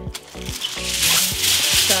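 Background music with a steady beat, over aluminium foil rustling and crinkling as it is spread out by hand; the crinkling gets louder about half a second in.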